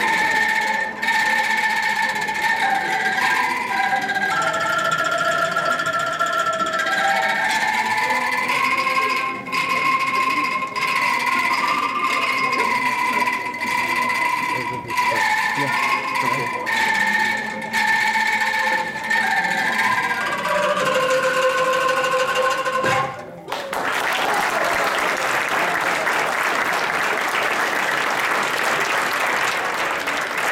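Angklung ensemble playing a melody on shaken bamboo rattles, the notes held and shimmering. The music stops suddenly on a final chord, followed by audience applause.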